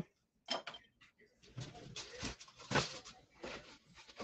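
Faint, scattered knocks and rustles of kitchen handling: cookware being moved and paper packaging handled.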